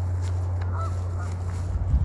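Geese honking faintly, a few short calls about a second in, over a steady low rumble.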